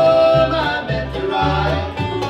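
Live acoustic bluegrass band playing: a held sung note ends about half a second in, and the band plays on under it with banjo, mandolin, acoustic guitar and a lap-played resonator guitar (dobro), while an upright bass moves on the beat.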